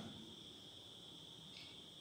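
Near silence, with a faint, steady, high-pitched trill of crickets. A second, slightly lower trill joins about one and a half seconds in.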